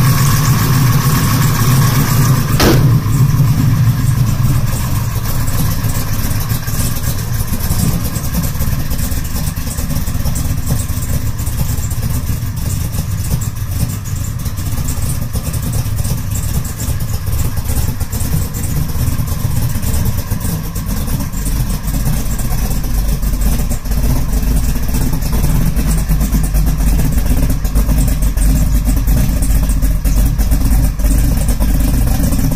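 A carbureted 572 cubic-inch big-block Chevrolet V8 running at idle shortly after a cold start, with a steady deep rumble.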